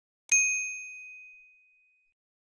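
A single notification-bell ding sound effect: one clear, high chime struck about a quarter of a second in and ringing out, fading away over about a second and a half.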